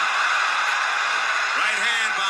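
Boxing crowd noise: many voices blended into a steady din. A man's commentary comes back in near the end.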